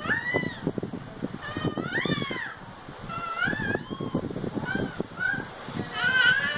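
A young child's high-pitched squeals: about six short calls, each rising and falling in pitch, with gaps between them.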